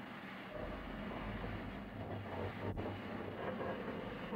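A steady low rumble with hiss, and a low hum that comes in about half a second in.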